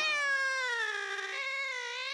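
A single long, drawn-out wail with a rich, ringing tone. It falls slowly in pitch and steps up again about one and a half seconds in.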